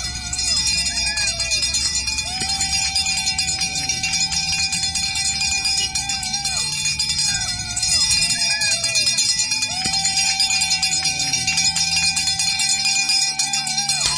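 Roadside spectators cheering on cyclists: short whooping calls and two long drawn-out calls of about four seconds each, over a steady jingling rattle of shaken noisemakers and pom-poms.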